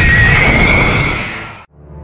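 A burning Ringwraith (Nazgûl) gives a high, wailing shriek over the film's fire noise and orchestral score. The shriek fades and cuts off suddenly about one and a half seconds in.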